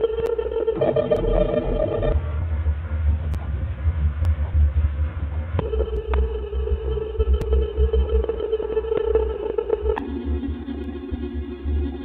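Synthesized electronic drone from the Fragment additive/granular spectral synthesizer: a steady pitched tone with many overtones over a pulsing deep rumble. It breaks into a noisy wash about two seconds in, and the tone comes back near six seconds. About ten seconds in it shifts to a lower pitch.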